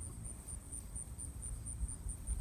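Faint outdoor ambience: insects chirring in a steady, high, evenly pulsing trill over a low rumble.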